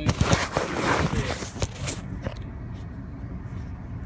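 Rough rubbing and rustling from a handheld phone being moved about for roughly two seconds, then the low, steady hum of the vehicle's engine running.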